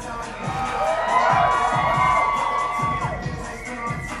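Audience cheering over loud dance music with a steady thumping beat. The cheering swells about half a second in and is loudest for the next couple of seconds.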